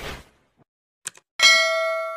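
Subscribe-button animation sound effects: a whoosh trailing off, two quick clicks about a second in, then a bright bell-like ding, the loudest sound, ringing on, the notification-bell chime.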